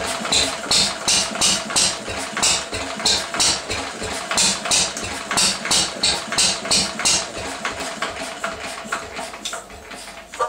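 1937 Lister D 2 hp single-cylinder stationary engine running roughly, each firing a sharp crack about twice a second with uneven strength, getting quieter and slower near the end. It is running very poorly and backfiring after years unused, and the owner wonders whether the ignition timing is off.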